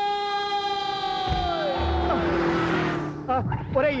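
A man's long drawn-out shout held on one high pitch, falling away about halfway through and fading near three seconds, with a dull thump about two seconds in.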